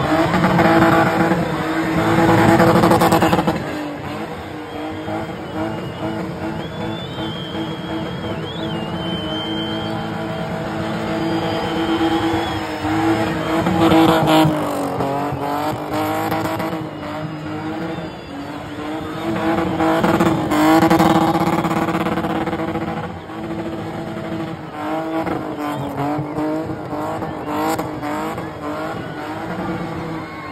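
A BMW's engine held at high revs while the car spins in tight circles, tyres squealing and scrubbing on the tarmac. The engine note stays mostly steady, surging louder a few times and dipping in pitch briefly about halfway through and again near the end as the throttle eases.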